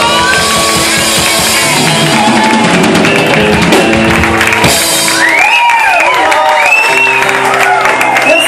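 Live band playing at full volume: acoustic and electric guitars over a drum kit, with gliding melodic lines rising and falling over the top in the second half.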